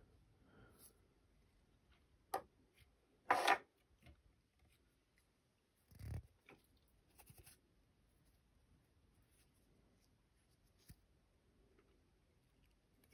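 Faint, scattered handling sounds from fly tying at a vise: a few short rustles and small clicks as fingers work CDC feather onto the hook, with a soft low thump about six seconds in.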